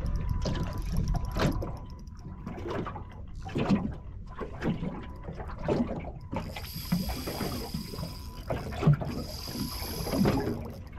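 Small aluminium boat with water slapping and knocking against the hull about once a second, and wind rumbling on the microphone. A high steady whirr comes in twice in the second half.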